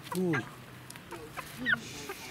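A rooster gives a short, high call near the end, after a man's brief "ooh".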